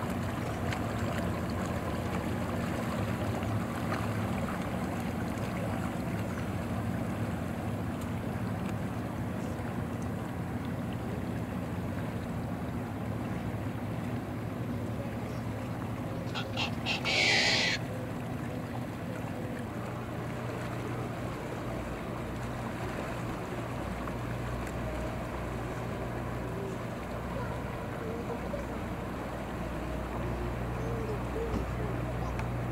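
Yamaha 250 outboard on a Century center-console boat running steadily at low speed, a low hum over a wash of water and wind. A little past halfway comes a short hiss-like burst led by a few quick clicks, the loudest moment.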